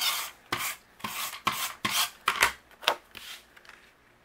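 Tape runner drawn across a cardstock panel in a run of about eight short strokes, laying down adhesive tape.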